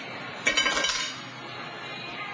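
A sudden crash with a clinking, glassy clatter about half a second in, dying away within about half a second.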